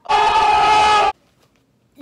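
A girl's loud, high-pitched scream held at one steady pitch for about a second, then cut off abruptly.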